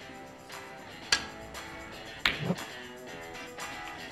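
Background music with two sharp clicks of snooker balls being struck: the louder one about a second in, the second a little after two seconds.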